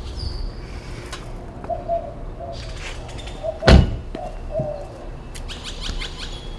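A car door of a Mini Countryman is shut with a single solid thunk a little past halfway through, over a steady outdoor background with short bird calls, some like doves cooing.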